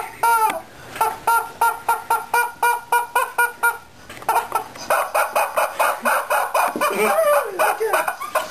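Yellow screaming rubber chicken squeezed again and again: one squawk at the start, then a quick regular run of short squawks at about four a second, then a faster, wavering stretch of squawks to the end.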